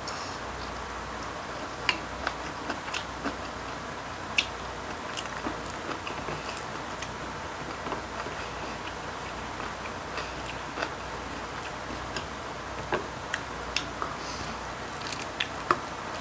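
Chopsticks clicking against ceramic bowls and plates, a scattering of short sharp clicks at irregular intervals, with clusters early on and again near the end, over a steady low room background.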